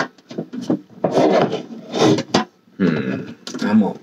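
A box being handled and moved aside, with rubbing, rustling and a few sharp clicks and knocks, mixed with short bits of mumbled speech.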